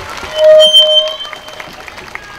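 Public-address microphone feedback: a brief, loud steady squeal about half a second in that fades within a second, as a handheld microphone is passed over and switched on.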